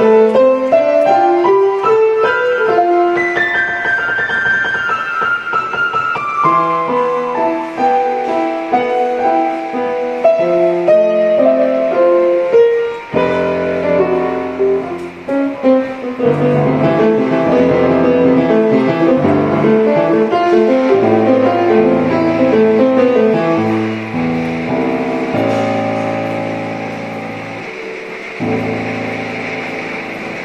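Piano music: running lines of notes, with a long descending run a few seconds in, growing fuller with low bass notes from about halfway through.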